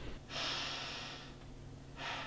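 A person taking one deep, audible breath lasting about a second, a breathy hiss that then fades, with the next breath beginning at the very end.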